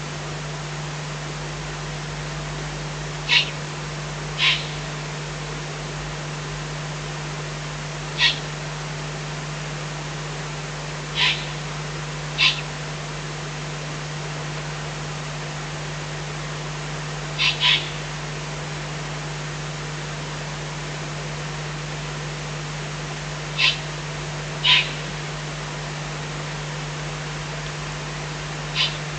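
Two young Eurasian eagle-owls giving short hissing calls, nine in all, spaced a few seconds apart and often in pairs, as owlets do when begging for food. Under them run a steady low hum and hiss.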